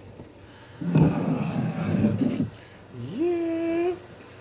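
Beer poured from a can into a pint glass, splashing for about two seconds, with a short sharp clink near the middle. Near the end a man hums one held note.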